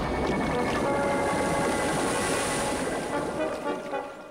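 Cartoon sound effect of a small submarine submerging: steady churning, bubbling water that fades out near the end, with background music underneath.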